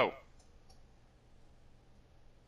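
A voice says a short "oh" with a falling pitch at the very start, then it is near quiet apart from two faint clicks.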